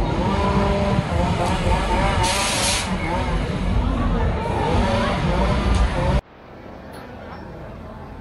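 Fairground ride running with a heavy low rumble under people's wavering voices and shouts, and a short burst of air hiss about two seconds in. The sound cuts off abruptly about six seconds in, giving way to quieter crowd noise.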